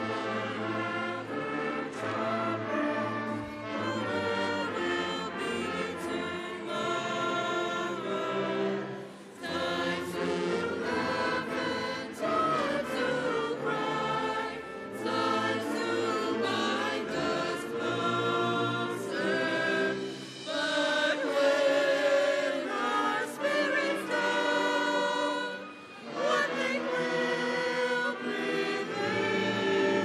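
High school concert band and chorus performing the alma mater: sung voices over brass and flutes, in phrases with brief pauses between them.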